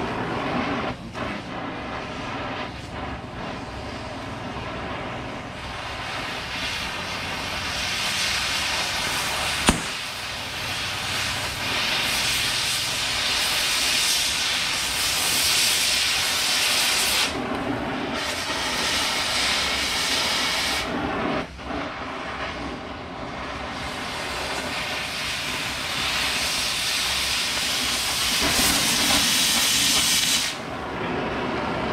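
Oxy-fuel cutting torch hissing steadily as it preheats and cuts the steel tooth pockets off an auger flight. The hiss grows louder and sharper from about eleven seconds in and again in the last few seconds, while the cutting oxygen is on and sparks fly, and it drops back briefly in between. A single sharp click comes about ten seconds in.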